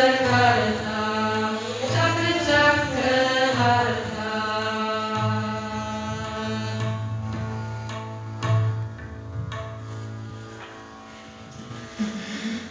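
Women singing a mantra to bowed fretted Indian string instruments over a steady low drone. The singing runs through the first half; then the bowed notes are held and fade as the piece comes to its end.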